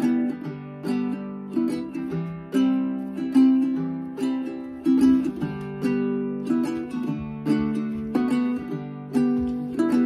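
Instrumental intro played on a small nylon-string guitar and a ukulele together: plucked notes and chords in a steady, lilting pattern, with no singing.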